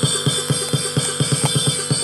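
Music with a fast, even drum beat: quick, regular low drum hits with no singing.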